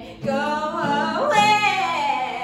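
A woman singing to her own acoustic guitar; after a short break right at the start, her voice climbs to its loudest, highest note about one and a half seconds in.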